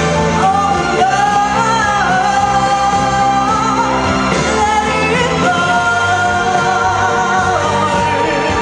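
A young female singer singing into a microphone over instrumental accompaniment, her voice coming in about half a second in and holding long notes, the longest near the end.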